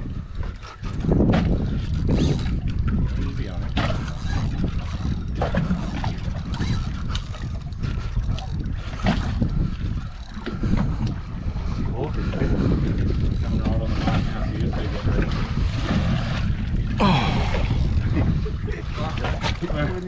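Wind buffeting the microphone over the wash of water around a boat at sea. Scattered knocks throughout, and short wordless vocal sounds near the start and again about three-quarters through, while a fish is fought on a heavily bent rod.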